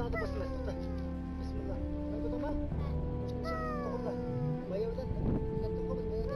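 A man speaking, instructing a child, over background music with long held notes. No gunshot is heard.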